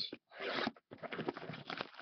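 Plastic shrink-wrap being torn off a sealed hobby box of trading cards: a crinkling, tearing rustle in two stretches, the second lasting about a second.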